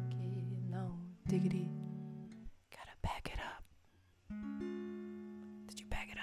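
Strummed acoustic guitar chords under the last sung notes of a song, then a short breathy vocal sound about three seconds in. A final chord is strummed about four seconds in and left to ring out slowly as the song ends.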